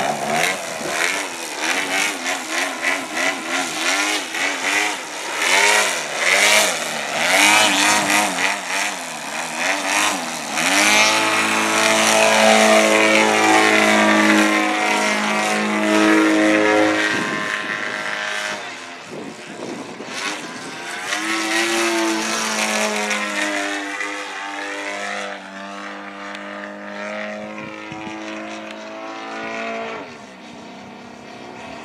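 Radio-controlled Yak 54 aerobatic model airplane's engine and propeller, its note swinging rapidly up and down for about the first ten seconds while the plane hangs nose-up low over the field. After that the note holds steadier, in long even stretches, and gets quieter as the plane flies high.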